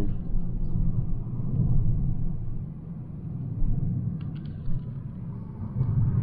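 Car driving on the road, heard from inside the cabin: a steady low rumble of tyres and engine, with a few light clicks about four seconds in.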